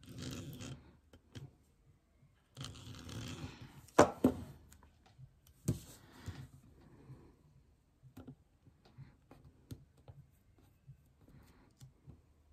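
Paper rustling and scraping as planner stickers are handled, peeled and pressed onto a planner page, in three short spells. Two sharp taps come about four and six seconds in, followed by faint small ticks.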